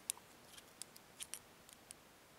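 Faint, light metallic clicks, about seven scattered over two seconds, as a small tool prods and catches at the retaining clip on the end of a lock cylinder's plug while trying to pry it off.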